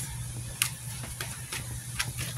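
Faint, steady hiss of rain heard from indoors, over a low electrical hum, with a few light clicks.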